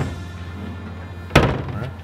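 Metal pull-down chute of a mail drop box slammed shut, one sharp thunk about one and a half seconds in, over background music.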